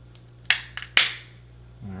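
Plastic car key fob shell snapping shut: two sharp clicks about half a second apart, with a few small ticks between, as the case halves are pressed together.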